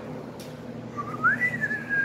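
A person whistling a single note that starts about halfway in, slides up, then holds steady.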